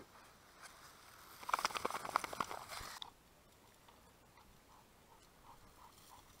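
Close rustling and crackling from handling in dry grass as a shot pheasant is taken from the dog, lasting about a second and a half. It stops abruptly and is followed by near silence.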